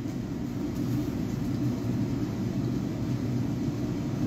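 Steady low rumbling background noise with no speech.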